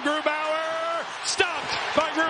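A male hockey play-by-play commentator's voice drawing out a word over a steady hum of arena crowd noise, with one sharp knock about a second and a half in.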